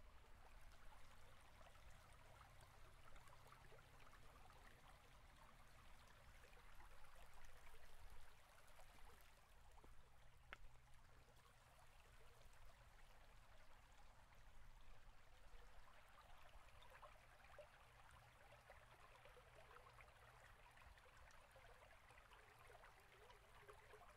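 Near silence: faint room tone, a low steady hum under a light hiss.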